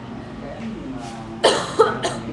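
A person coughing twice in quick succession, about a second and a half in.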